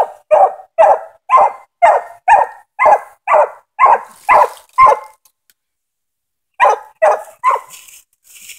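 Young English coonhound barking treed at the base of a tree: short, even barks about two a second for about five seconds, a brief pause, then three more. The steady tree bark is the sign she has a raccoon up the tree.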